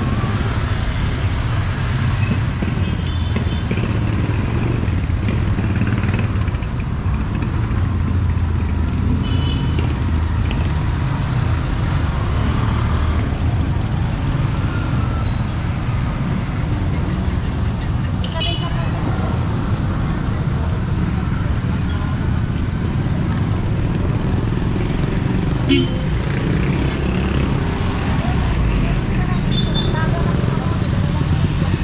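Street traffic: motorcycles and motorized tricycles running past in a steady low engine rumble, with people talking nearby.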